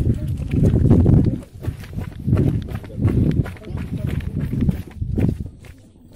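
Indistinct voices of people outdoors, with low rumbling handling or wind noise on the recording and scattered clicks. The sound comes in irregular loud patches and fades near the end.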